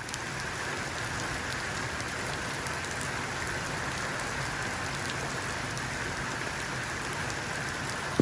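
Steady rain falling into puddles on paving slabs, an even, unbroken splashing.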